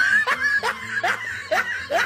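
High-pitched laughter in short repeated bursts, about three a second.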